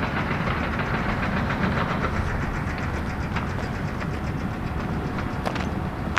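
Steady engine rumble of running construction machinery, with a fast, even ticking over it in the first couple of seconds.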